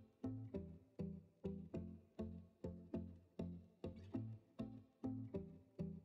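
Faint background music: a steady run of plucked string notes, about two and a half a second, each dying away.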